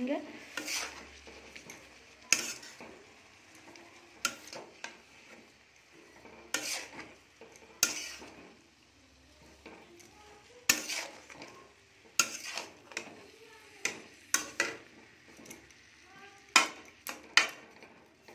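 Metal spatula scraping and knocking against a metal kadhai as shredded cabbage is stirred and mixed, in irregular strokes a second or two apart. A faint sizzle runs between the strokes as the cabbage fries in the oil.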